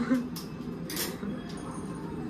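Scissors snipping open a small plastic seasoning sachet: a few short, crisp snips and packet crinkles, the loudest about a second in, over a steady low hum.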